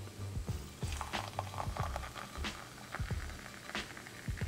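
Boiling water poured from a canteen cup into a small aluminium cup of instant coffee, a faint trickle with light clinks, under quiet background music.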